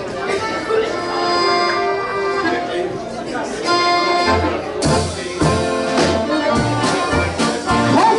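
Two piano accordions playing a polka, opening with held chords; about four seconds in, the drum kit and acoustic guitar join with a steady, bouncy beat.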